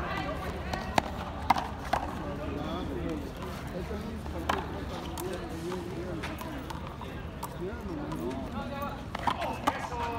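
Sharp smacks of a hard handball being struck with the bare hand and slapping against the concrete frontón wall during a rally: a cluster of hits in the first two seconds, one more a little before the middle, and two close together near the end, over spectators' chatter.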